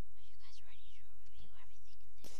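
A girl whispering, her words unclear, with a light knock about one and a half seconds in. A steady low hum runs underneath.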